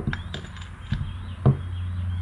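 A few light clicks and knocks of steel taper shanks being handled and set against each other on a wooden workbench, over a steady low hum.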